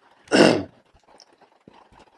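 A man's single short, noisy breath, under half a second long, about a third of a second in.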